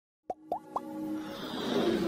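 Logo intro sound effects: three quick rising plops in the first second, then a swell that builds steadily louder.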